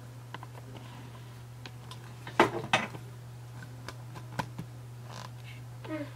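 HP Envy 5055 printer's cartridge carriage mechanism, heard as a steady low hum with two sharp clacks a little under halfway through and a few faint clicks later.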